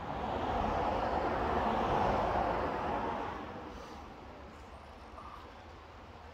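A vehicle passing on a distant road: a rush of tyre and engine noise that swells over the first two seconds and fades away by about four seconds in.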